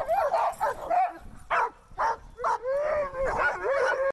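Sled dogs barking and yipping excitedly, short barks coming about twice a second, with a longer wavering yelp in the second half.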